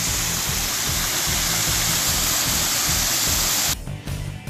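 Waterfall rushing steadily, over background music with a steady low beat. The water sound cuts off suddenly near the end.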